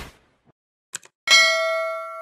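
A short click, then a sharp bell-like ding whose several ringing tones fade slowly: the notification-bell sound effect of an animated subscribe button. The tail of a whoosh fades out at the start.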